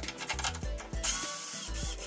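A power drill or driver runs for just under a second, starting about a second in, with quick mechanical clicking around it, over background music with a bass beat.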